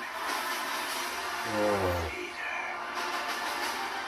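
Film trailer soundtrack music, with a short voice-like sound about a second and a half in.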